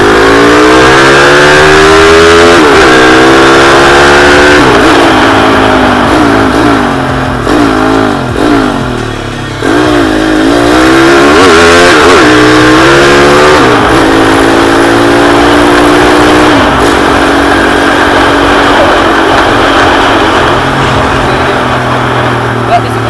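Honda C70 with a racing-tuned, bored-up 120cc four-stroke single-cylinder engine, ridden hard and very loud. The engine note climbs and drops back several times as it pulls up through the gears, eases off briefly about eight seconds in, pulls up again, and from about fourteen seconds settles into a steady cruising note.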